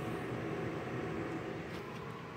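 A steady mechanical hum with faint, even tones running under it, like a fan or small motor.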